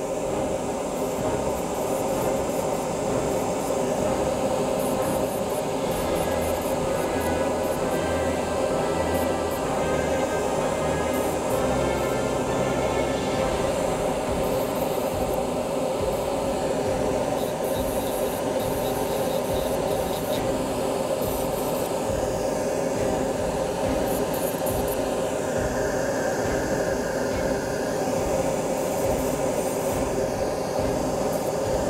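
Dental lab micromotor handpiece running at a steady speed, its bur and thin abrasive disc rubbing against the acrylic as a PMMA full-arch prototype is ground slimmer and the gaps between the teeth are opened. The whine and grinding hold steady throughout.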